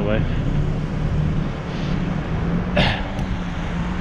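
Steady low rumble of wind on the microphone of a cyclist's action camera riding through city traffic, mixed with the noise of cars around it. A brief sharp sound about three seconds in.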